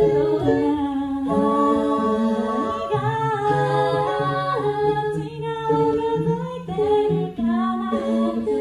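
Mixed five-voice a cappella group singing, with no instruments: several voices hold chords that shift every second or so over a low sung bass part.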